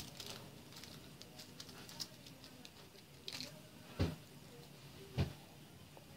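Quiet handling of a dough ball on a square of parchment paper: light paper rustling and faint ticks, with two soft knocks about four and five seconds in.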